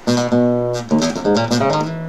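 Nylon-string flamenco guitar strummed with the thumb in quick down and up strokes. A few chords change within about two seconds, and the last one is left ringing near the end.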